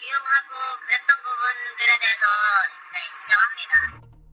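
A man speaking Korean through an electronic voice-disguising filter, which makes the voice sound thin and synthetic with no low end.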